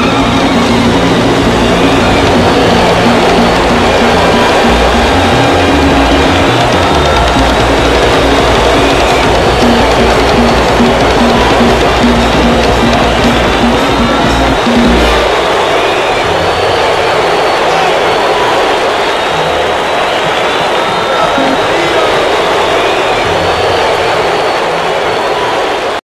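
Live salsa band playing loudly, with electric bass notes underneath; the bass stops a little past halfway while the rest of the sound carries on.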